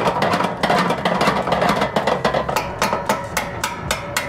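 Hand tool and metal fold-out RV entry stairs clicking and clattering in a quick run of sharp clicks as the jammed stairs are worked loose.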